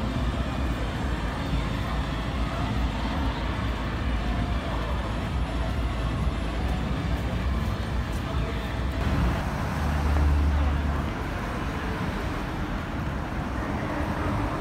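Street traffic at a city intersection: road vehicles running and passing in a steady hum, with a louder low engine drone about ten seconds in.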